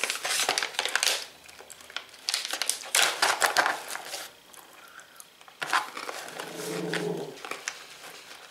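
Crinkling of a plastic snack bag being opened and handled, in three spells.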